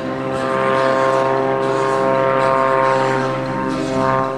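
Extra 330XS aerobatic plane's piston engine and propeller droning steadily as it flies its display, swelling to its loudest in the middle and easing off near the end.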